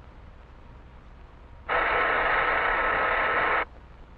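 A loud, steady hissing noise, like static, starts abruptly a little under two seconds in, holds for about two seconds and cuts off suddenly, over faint background hiss.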